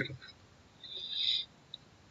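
A faint, brief high-pitched hiss about a second in, then a single short computer mouse click near the end as the Paste command is clicked.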